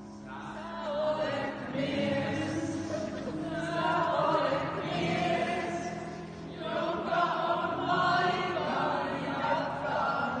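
A mixed group of men and women singing a song together, with a brief pause between phrases about six and a half seconds in.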